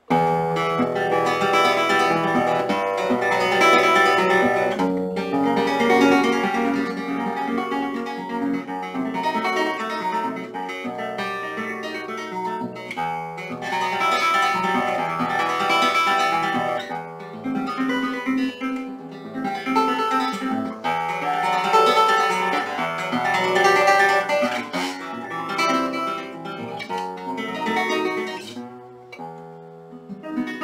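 Solo nylon-string classical guitar playing a flowing arpeggio pattern, starting at the outset, with a brief fall in level near the end before the playing picks up again.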